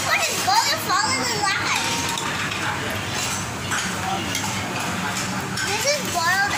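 A young girl's high-pitched wordless vocalizing, rising and falling mostly in the first two seconds and again near the end, over the steady background hubbub of a busy restaurant dining room.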